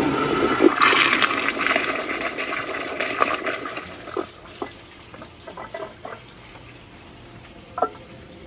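American Standard Glenwall toilet flushing a bowl of dirty water and debris: a loud rush of water that dies down after about four seconds into a quieter refill trickle with a few gurgles.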